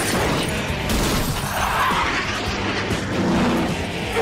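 Animated action-scene soundtrack: dramatic score mixed with sound effects of speeding battle vehicles and a few sharp impacts.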